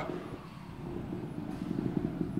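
A low, steady background rumble with no distinct events.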